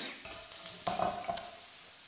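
Vegetables sizzling in a hot steel wok over a gas flame, with a few light metallic clinks in the first second and a half; the sizzle thins out near the end.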